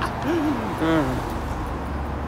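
A person's voice making two short wordless vocal sounds, each rising and falling in pitch, about half a second apart, over the steady low rumble of road traffic in the tunnel.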